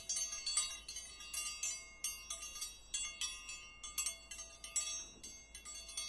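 Chime sound effect for a ringing notification bell: a dense run of high, ringing metallic strikes, several a second, overlapping like wind chimes.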